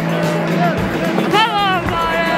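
Music with singing played over a football stadium's public-address system, with a steady background of the crowd. A single voice swoops sharply in pitch about one and a half seconds in.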